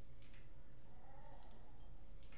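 A few faint clicks over a steady low hum.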